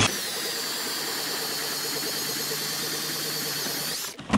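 Ridgid cordless drill spinning a Pistol Bit ice auger, boring steadily down through lake ice, with a high motor whine that stops suddenly at the end.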